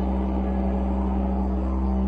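Didgeridoo drone in ambient music: a steady, unbroken low hum with a breathy, rushing layer over it.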